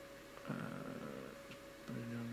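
A man's drawn-out, hesitant "uh" over quiet room noise with a faint steady hum; a word of speech begins right at the end.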